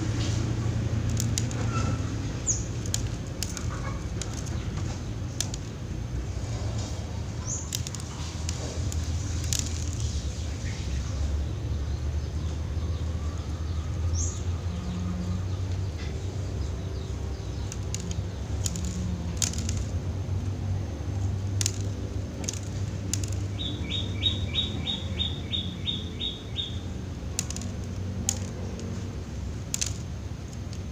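Young zebra dove fluttering its wings and knocking about in its bamboo cage as it is fed from a cloth through the bars, with scattered light clicks. A low steady hum runs underneath, and a quick run of about ten short high-pitched notes comes near the end.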